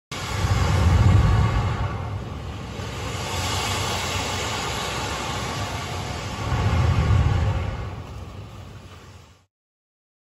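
Rushing, churning water of waves pushed out by the Surf Lakes wave pool's plunger, a steady rush with two deep swells about six seconds apart. It fades out near the end.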